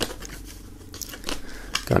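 Card packaging being handled: light scrapes and a string of small sharp clicks as a USB stick is worked out of its folded card holder with some difficulty.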